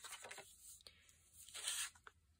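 Paper being handled at the crafting table: short, faint scraping rustles, the loudest one near the end.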